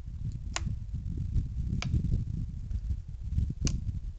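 Wind buffeting the microphone, with three sharp metallic clicks about a second apart as the open breechblock of a .577 Snider rifle is pulled back to work its extractor.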